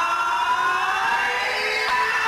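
Electric guitar feedback from the stage amplifiers, left ringing out after the song stops: several high whining tones that slowly slide in pitch.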